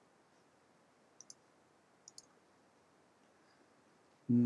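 Two pairs of short computer mouse button clicks, about a second apart, over near silence.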